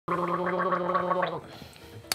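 A man's voice holding one steady, gargled note with a fast, even warble, about six pulses a second. It stops about a second and a half in.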